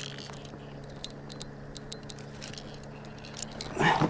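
Sparse light clicks and small water patters as a pike hooked on a jerkbait is handled and lifted at the waterline, over a steady low hum.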